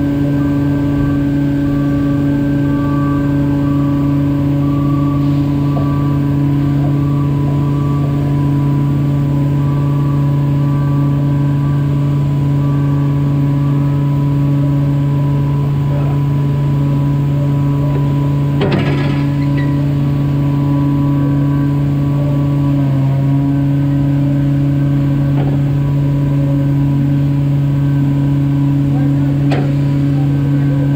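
A steady, loud mechanical hum from running machinery, with one sharp knock about nineteen seconds in and a fainter one near the end.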